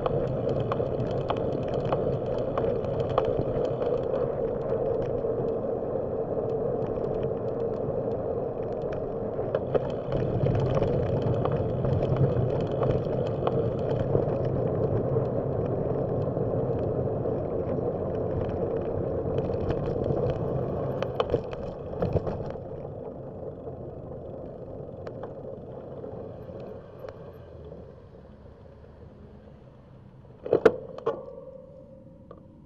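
Bicycle tyres rolling on asphalt trail, a steady rushing hum dotted with small clicks and rattles from the bike. About two-thirds of the way through the noise fades off as the bike slows.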